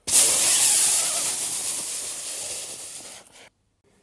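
A man blowing out one long, hard stream of air from the mouth, a demonstration of pushing as much air as possible for clarinet playing. It starts suddenly and loud, fades slowly, and stops about three and a half seconds in.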